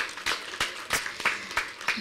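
Audience clapping: a short, scattered round of applause of irregular claps.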